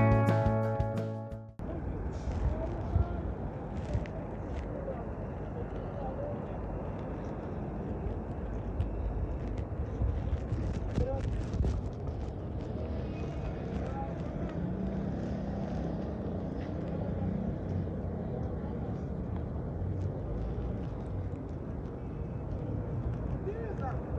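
Background guitar music cutting off about a second and a half in, then night street ambience: indistinct chatter of passers-by over a steady hum of city traffic.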